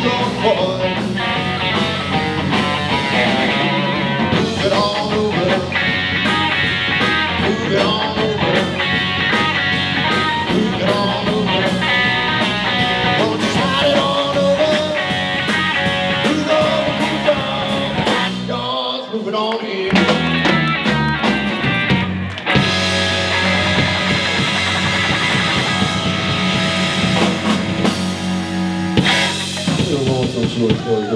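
Live rock band playing: electric guitar, bass guitar and drum kit, with singing. About two-thirds of the way through, the bass and drums drop away briefly, then the full band comes back in.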